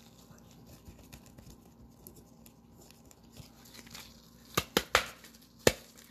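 Gloved hands handling trading cards and hard clear plastic card holders: faint rustling, then four sharp plastic clicks in the last second and a half.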